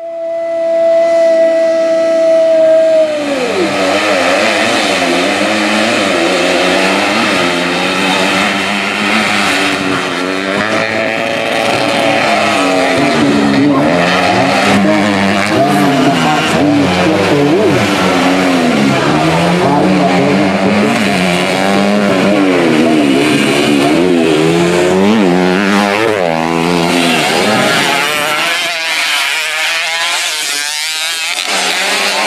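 Racing motorcycle engines on a dirt grasstrack, several running together and rising and falling in pitch as they accelerate, shift and back off. It opens with one steady high pitch held for about three seconds that then drops away.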